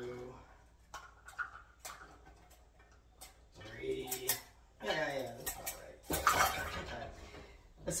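Chopped rhubarb scooped with a measuring cup from a stainless steel bowl and tipped into a glass baking dish: scattered clicks and light clatters of cup, bowl and pieces. About six seconds in comes a louder, longer rattle of rhubarb pieces tumbling into the dish.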